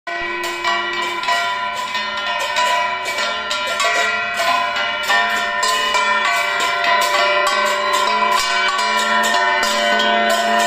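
Brass hand gongs beaten with sticks, together with a hand bell and small hand cymbals, ringing continuously in dense, uneven strikes, several a second, over a sustained metallic ring.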